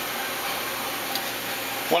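Steady hiss of a Hansvedt DS-2 benchtop wire EDM running an edge find, the wire feeding as the machine searches for the part's edge.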